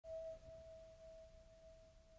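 Electronic music: a single held synthesizer tone, faint and steady in pitch, slowly fading away.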